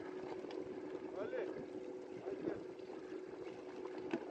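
An engine running with a steady hum, with faint voices calling in the background.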